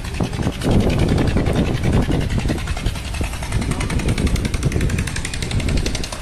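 Wind buffeting the phone's microphone on a high open balcony: an uneven, rumbling roar that rises and falls in gusts.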